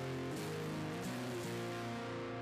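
Acoustic guitar playing an instrumental passage of a song, a new chord struck about every half second.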